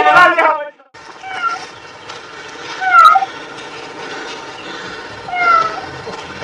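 A cat meowing loudly in a long, wavering call that cuts off abruptly under a second in. After a brief gap come three short, high-pitched animal cries spread over the next few seconds.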